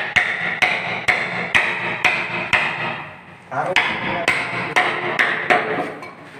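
Hammer blows struck at the foot of a wooden door being fitted, about two a second, each ringing briefly. The blows come in two runs with a short pause about halfway through.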